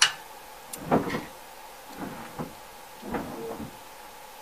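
Steel parts of a cast-iron bench plane handled during disassembly: a sharp click, then a few light knocks and scrapes as the iron and chip breaker are lifted out of the plane body.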